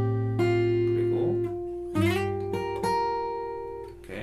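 Bedell acoustic guitar with a capo, fingerpicked: single melody notes ring over a held bass note, then a new chord is plucked about two seconds in and a couple more notes are added, all left to ring and fade away.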